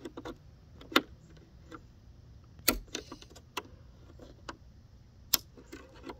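A small flathead screwdriver tip clicking and scraping against the plastic of a GMC Sierra side-mirror housing as it probes for the spring-loaded tab that releases the stock puddle light. There are a dozen or so irregular sharp clicks, the loudest about a second in, near three seconds and a little past five seconds.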